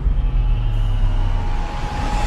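Cinematic logo-intro sound design: a loud, deep rumbling drone with faint high held tones over it and no beat.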